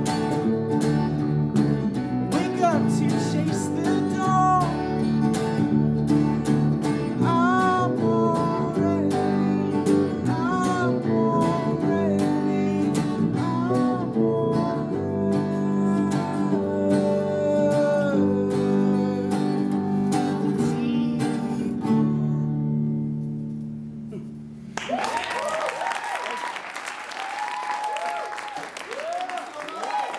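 A male singer with acoustic guitar and electric bass guitar performing a song; the last chord rings out and fades just before the end. About 25 s in, clapping and lively voices break out.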